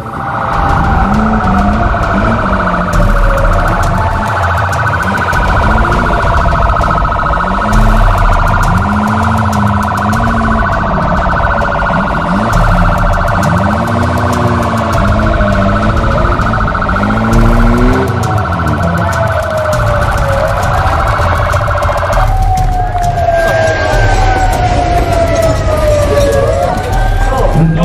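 Loud emergency vehicle sirens, more than one sounding at once, with wailing tones that rise and fall. A fast warbling siren cuts off about 22 seconds in, leaving one siren wailing.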